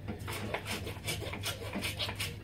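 Dishes being scrubbed at the kitchen sink: a rhythmic run of rasping, rubbing strokes, about three a second.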